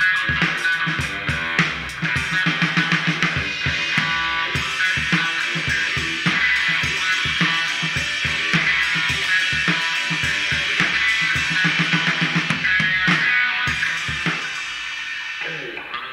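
Rock music: guitar played over a drum kit keeping a steady beat.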